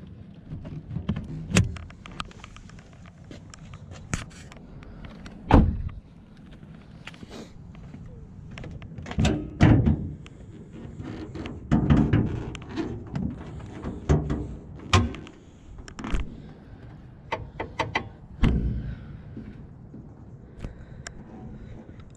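A series of separate clicks and thunks from a 2012–2019 Nissan Versa as its hood is released from inside the cabin, then unlatched and lifted at the front. The loudest thunk comes about five and a half seconds in.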